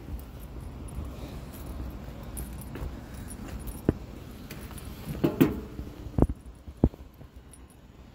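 A steady low rumble with a few sharp, separate clicks from about halfway through to near the end.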